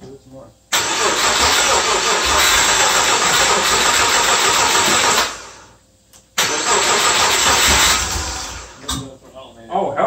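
Subaru EG33 flat-six being cranked on the starter in two attempts, the first about four seconds and the second about two, trying to run without settling into an idle. These are first-start attempts on a Megasquirt3 ECU with LS2 coils, after ignition signal problems.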